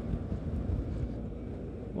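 Low wind rumble on the microphone of a moving motorcycle, with the Yamaha Ténéré 250's single-cylinder engine running at low revs in slow traffic.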